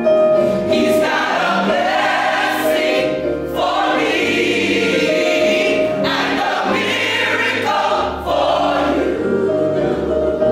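Gospel choir singing in full voice, with sustained held notes, backed by keyboard.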